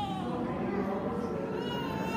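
Infant crying in drawn-out wails. The first cry falls in pitch just after the start, and a second begins near the end.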